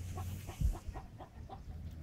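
Chickens clucking in a quick run of short notes, about five or six a second, over a low steady hum.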